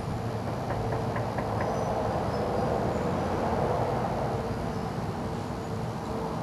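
Four or five quick, faint raps on a door about a second in. Under them a passing vehicle's rushing noise swells to a peak and fades, over a steady low hum.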